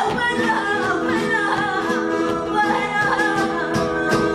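A woman singing flamenco cante: one long, wavering, ornamented sung line. She keeps time with hand-clapping (palmas), heard as sharp claps, over acoustic flamenco guitar accompaniment.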